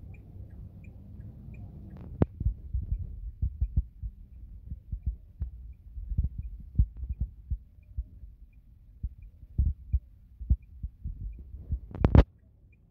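Low rumble inside a slowly moving car, with irregular dull thumps and a faint steady tick about one and a half times a second.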